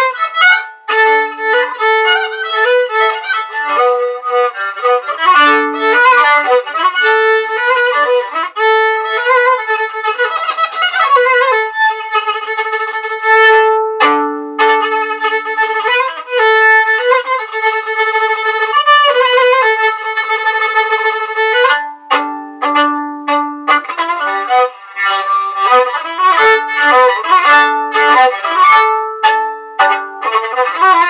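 Solo violin playing a written melody, mixing quick runs with longer held notes.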